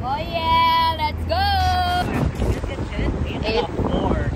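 A young female voice in two long drawn-out, sung-like calls, the second sliding up in pitch before it holds, then wind rumbling on the microphone with a few brief voice fragments.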